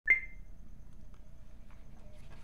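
A single short high electronic beep right at the start, fading within a fraction of a second, followed by faint steady room hum.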